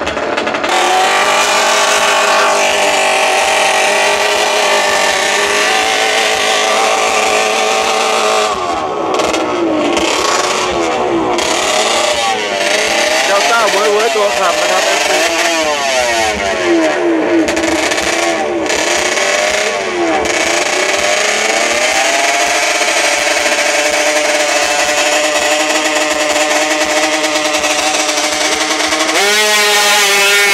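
Small drag-race motorcycle engine revving hard at the start line. The throttle is blipped repeatedly so the pitch swings rapidly up and down, then held at a steady high rev. Just before the end the bike launches and the pitch climbs sharply.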